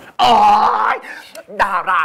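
Speech: a loud, drawn-out exclamation of "oh" (Thai "อ๋อ") lasting nearly a second, followed by a spoken word.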